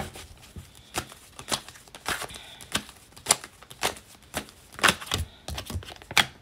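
A tarot deck being shuffled and handled, with cards drawn from it: a series of irregular crisp card clicks and snaps, about a dozen of them.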